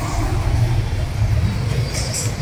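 Low, steady rumble of street traffic.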